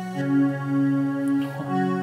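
Soloed synthesizer track playing sustained, held chord tones that change about one and a half seconds in, its highs brightened by an Aphex aural exciter plug-in.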